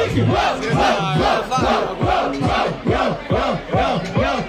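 Rap-battle crowd shouting together in a fast, even chant.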